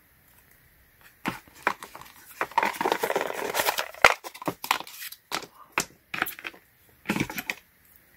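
Paper and cardboard packaging rustling and crinkling, with sharp clicks and knocks, as coiled USB cables are pulled out of a small cardboard box. It starts about a second in, after a short quiet, and goes on in irregular handling sounds until near the end.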